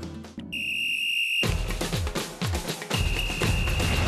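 A soft guitar tune fades out, then a whistle blows one long steady blast about half a second in. Lively music with drums starts up, and a second long whistle blast sounds over it near the end.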